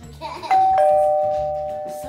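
Doorbell chime, ding-dong: a higher note sounds about half a second in, then a lower one a moment later, both ringing on and fading slowly.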